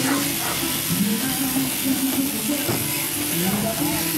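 Shearing handpiece running with a steady buzz as it cuts wool during the crutching of a merino ewe, with a voice or music going on underneath.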